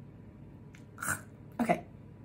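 A woman clearing her throat twice in short bursts, about a second in and again just over half a second later, just after a sip of tea.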